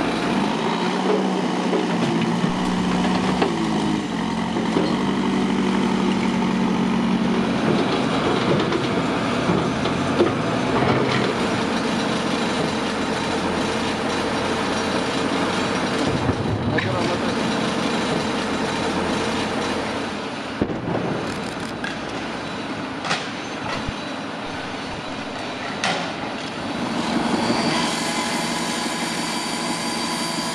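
A heavy machinery engine running steadily, mixed with the clatter of bricks and debris being moved, with a few sharp knocks in the second half.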